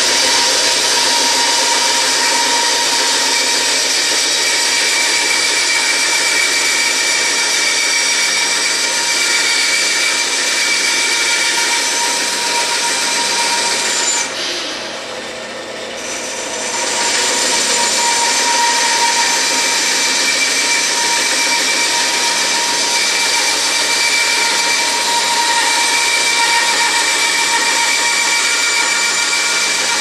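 Bandsaw ripping through an oak block: a steady machine whine with the hiss of the blade cutting wood. The sound drops for about three seconds near the middle, then picks up again as the cut goes on.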